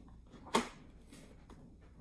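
A sharp single plastic click about half a second in, followed by a fainter click later, as the clear visor of a Scorpion Exo-510 Air motorcycle helmet is moved by hand on its pivot.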